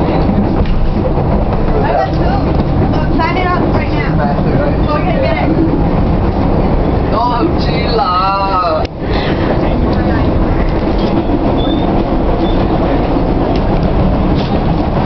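Subway train car running, heard from inside the car: a loud, steady low rumble that dips briefly about nine seconds in.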